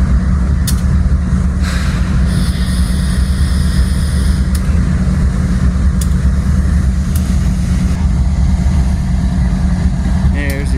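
Union Pacific diesel locomotive moving slowly through a rail yard: a steady low rumble, with a high-pitched squeal of a few seconds starting about two and a half seconds in, and a few light clicks.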